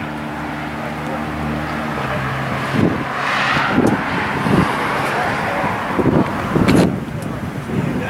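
A car's engine idling with a steady low note, then revved in about five short blips from about three seconds in; the car is plausibly the 1966 Chevelle SS 396.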